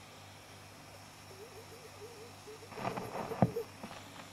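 Turntable tonearm being swung over a spinning flexi disc and lowered: faint handling rustle, then one sharp click as the stylus touches down, about three and a half seconds in, over a steady low hum through the amplifier.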